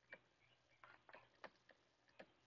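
Near silence with a handful of faint, short ticks from a stylus tapping on a tablet screen as words are handwritten.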